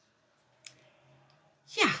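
A single short click in a pause, less than a second in, followed near the end by a woman saying 'ja'.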